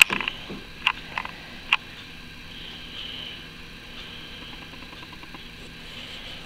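Handling noise from fingers on a plush toy and its fabric tag: a few short, sharp clicks in the first two seconds, then only a faint steady hiss.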